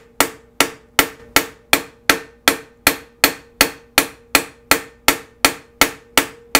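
Wooden mallet striking a silver spoon bowl on a steel stake in steady, even blows, nearly three a second, with a faint steady ring under the strikes, as the dented bowl is reformed.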